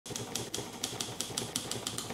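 Typewriter sound effect: keys striking in a quick, even run of about five strikes a second as the title letters are typed out on screen.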